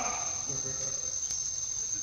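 A continuous, steady, high-pitched drone of insects, with cicadas or crickets calling in the surrounding vegetation.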